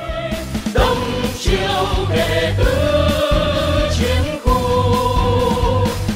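Choral music: a choir singing long held notes in phrases about two seconds long, over a steady low beat.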